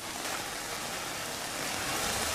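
Rain falling on standing floodwater: a steady hiss of drops that grows a little louder near the end.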